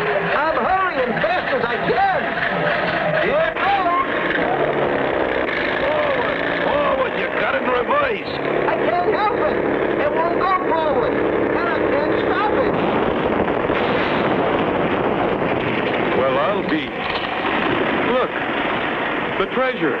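Several voices whooping and yelling in short rising-and-falling war whoops, over the steady running of an old truck's engine.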